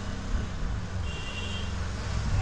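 Steady low background rumble with a faint, brief high tone about a second in.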